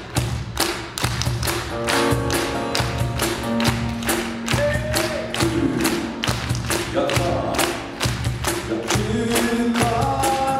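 Live acoustic band music: a steel-string acoustic guitar strummed over a steady thudding percussion beat, with held notes above it; singing starts near the end.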